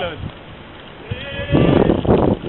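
Footballers' shouts across an outdoor pitch: a call ends just at the start, then after a short lull a drawn-out shout rises from about a second in and grows loud near the end.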